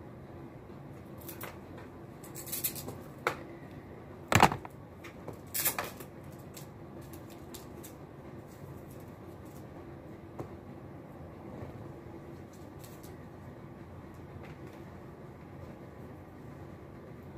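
Handling noises from a new laptop and its power cable: a few scattered clicks and rustles, the loudest a sharp knock about four and a half seconds in, over a steady low hum.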